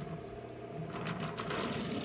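Wooden toy train trucks rolling along wooden track, pushed by hand, with their wheels rattling steadily and a few faint clicks.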